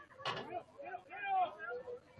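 Indistinct voices of soccer players and sideline coaches calling out during play: a short sharp shout, then several more calls, with no clear words.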